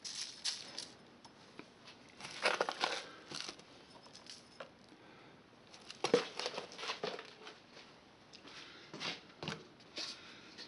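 A metal spoon scooping coarse dirt with small stones and twigs and scattering it onto a foam base and plastic sheeting: light patters and clicks in several short clusters with quiet gaps between.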